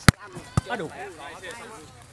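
A volleyball hit hard twice by hand, about half a second apart, with the first hit the louder, as in a spike at the net followed by a block or dig.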